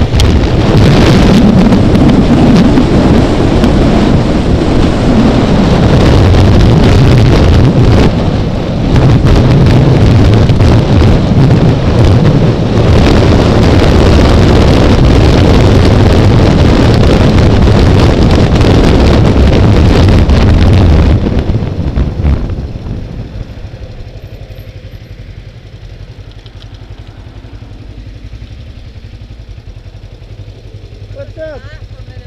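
Motorcycle riding, with heavy wind rush on the mic over the engine. About two-thirds of the way through the wind and road noise fall away sharply as the bike slows and stops, leaving the engine running quietly at idle.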